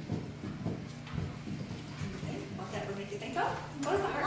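Quiet voices and a few soft knocks and shuffles of movement over a steady low hum, with a short stretch of speech near the end.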